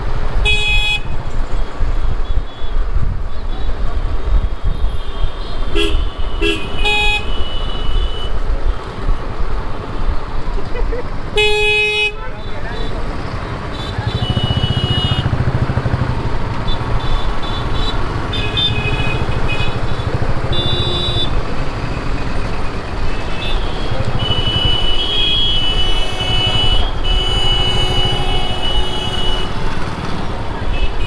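City road traffic heard from a moving two-wheeler: a steady rumble of engines and wind on the microphone, with vehicle horns honking repeatedly. There are short blasts about a second in and around six to seven seconds, a louder one near twelve seconds, and longer held horns in the second half.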